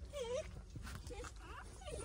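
Several faint, short squeaky whimpers from a newborn puppy whose eyes have not yet opened.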